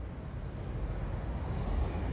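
Steady low background rumble with no distinct events, growing slightly louder toward the end.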